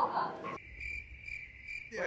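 A brief bit of speech, then a cricket chirping sound effect cut in over a dropped-out background. It plays as a steady high chirring for about a second and a half and ends abruptly.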